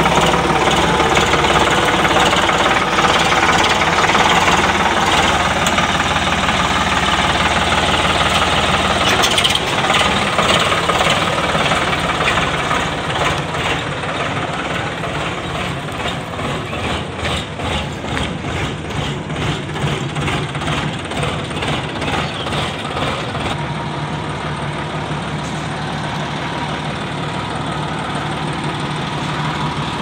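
Tractor diesel engine running while it pulls a hitched thresher, louder for the first dozen seconds, then settling into a steady idle with an even, rapid beat.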